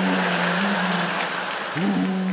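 A man humming a steady, level drone in imitation of a vacuum cleaner running. It breaks off briefly near the end and starts again, over audience laughter and applause.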